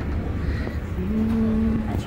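Steady low rumble of a train carriage, and about halfway in a person's voice holding one low note, a drawn-out "ooh" or hum, for about a second.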